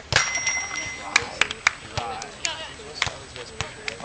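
A sharp slap of a hand striking a beach volleyball, just after the start, followed by a few fainter knocks and clicks. Faint voices are in the background.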